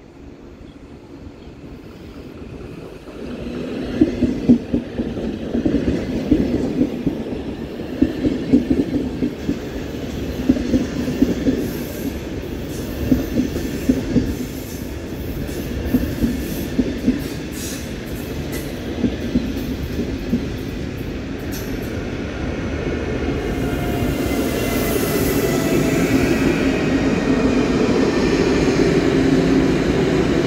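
Railjet push-pull train arriving and passing alongside the platform, cab car first. Its bogies clatter rhythmically over rail joints and points from about three seconds in. Near the end a louder hum and a high whine build as the locomotive at the rear comes by.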